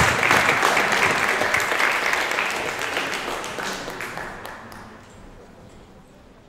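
Audience applauding, the clapping loud at first and then dying away over the last few seconds.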